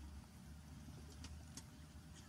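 Near silence: a steady low background rumble with a couple of faint clicks in the second half.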